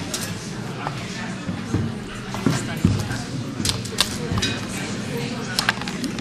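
Indistinct murmur of voices in a large hall, with a few short, sharp clinks and knocks of dishes and utensils, most of them in the second half.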